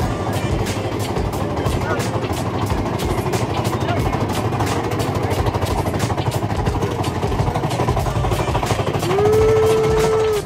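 Big Thunder Mountain Railroad mine-train roller coaster running along its track: a steady loud rumble with rapid clatter. Near the end one long held high note rises at its start and then stays steady for about a second.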